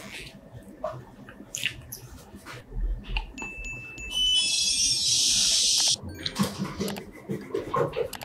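Rusty sheet-metal box being handled: light metallic clinks and knocks, then a loud harsh scrape lasting about two seconds from about four seconds in, and a cluster of knocks near the end.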